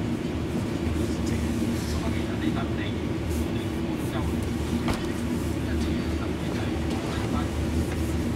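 A small motor, such as a heater fan, runs with a steady low hum. Faint voices sit underneath it.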